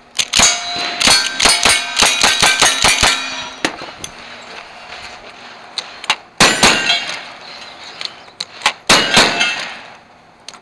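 Rapid lever-action rifle fire, about ten shots in three seconds, each answered by the ring of a struck steel plate. After a pause, heavier blasts from a side-by-side shotgun, with knockdown steel targets clanging down.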